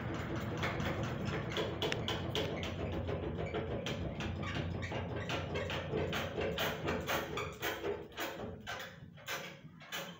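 Sony ceiling fan with its blades bent out of line, coasting down after being switched off: its hum fades while a steady run of knocks from the unbalanced, wobbling fan slows, thins out and grows fainter.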